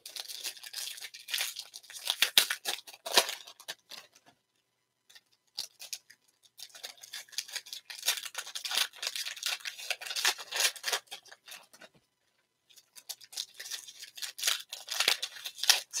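Foil wrapper of a trading-card pack crinkling and tearing as it is pulled open by hand, in crackly runs broken by two short pauses.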